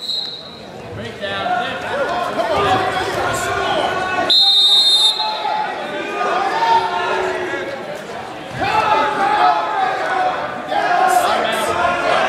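Spectator voices and chatter echoing in a school gym during a wrestling bout, with a shrill steady tone about a second long a little over four seconds in, the referee's whistle or the scoreboard buzzer stopping the action.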